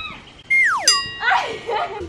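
An edited-in cartoon sound effect: a quick falling whistle-like glide, then a bright ding that rings on, followed by brief voices over background music.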